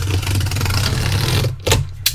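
Packing tape on a cardboard shipping case being slit and torn open along the seam: a continuous rasping scrape for about a second and a half, then a short sharp knock on the cardboard near the end.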